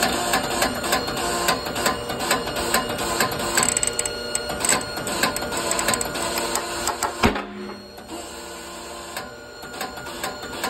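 A rust-seized output shaft from a Fuller FRO-16210C transmission being forced out in a 100-ton hydraulic press: a run of sharp clicks and creaks as the rusted fit takes the load, then one loud bang a little past seven seconds in as it breaks loose.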